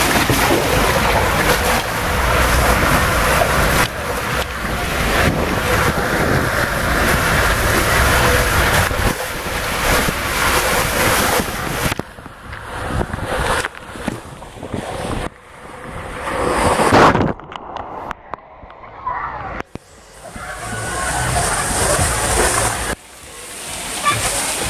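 Water rushing and a rider sliding fast through an enclosed water-slide tube, with wind on the microphone: a loud, steady rush for the first half, then choppier and uneven, with a muffled spell in the second half.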